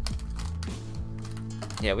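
Foil wrappers on chocolate truffles being handled: a few short crinkles and taps of the foil, over soft background music.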